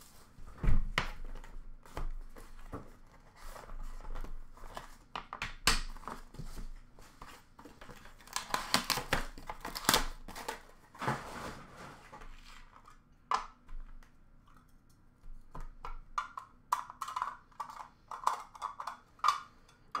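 A sealed trading-card box being unwrapped and opened by hand: plastic wrap crinkling and tearing, with scattered clicks and knocks of cardboard and packs being handled, and a denser rustle around the middle.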